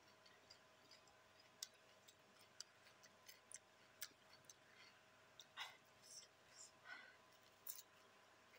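Faint mouth sounds of a person eating: scattered soft clicks and smacks of chewing, with two short breathy vocal sounds about five and a half and seven seconds in.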